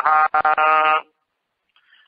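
A man's voice chanting a Sanskrit verse, holding the last syllable on one steady note for about a second before stopping short.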